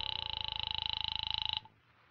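Telephone bell ringing once with a rapid clattering ring for about a second and a half, then stopping abruptly: the call ringing through at the other end before it is answered.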